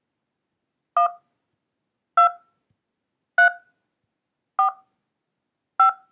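Five touch-tone (DTMF) beeps from a Twilio Client web-phone keypad, one about every 1.2 seconds: the digits 1, 2, 3, 4, 5 keyed in order in answer to a prompt for five digits. Each beep is short and made of two notes sounding together.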